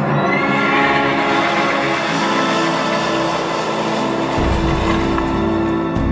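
Film soundtrack played over cinema speakers: music with held chords over a dense noisy swell, joined by a deep rumble about four and a half seconds in.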